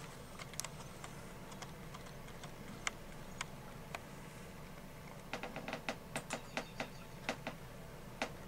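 Computer keys clicking as image frames are stepped through on screen: a few scattered single clicks, then a quick run of about a dozen clicks starting about five seconds in.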